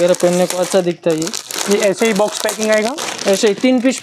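Speech in Hindi over the crinkling of plastic packaging as plastic-wrapped garments in boxes are handled.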